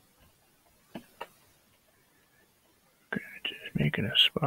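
Quiet room with two light taps about a second in, then a man's voice starting near the end, a mumble that is not made out as words.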